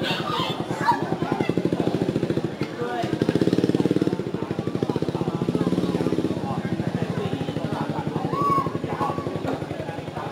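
A small engine running steadily with a fast, even pulse, and a few short voice-like calls over it, the clearest near the end.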